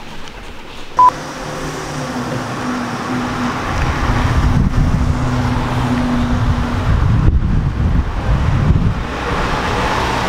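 A short electronic beep about a second in, then a car driving along the street toward the listener: engine hum and tyre noise that grow louder from about four seconds in.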